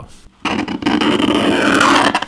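Utility knife blade scratching into the painted metal back panel of a Surface Pro 6 tablet. It is a continuous scraping that starts about half a second in.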